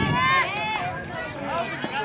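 Several high-pitched voices, children's by the sound of the crowd, shouting and calling out from the bleachers and dugout, overlapping with no clear words.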